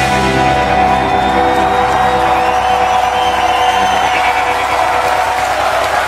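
A rock band's final chord ringing out, guitar and bass notes held steady after the drums stop, with the audience cheering over it.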